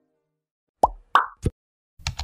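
Three short, pitched pop sound effects in quick succession, about a third of a second apart, starting just under a second in.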